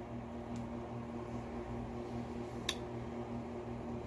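Steady low room hum with a faint steady tone, and a single faint click about two and a half seconds in.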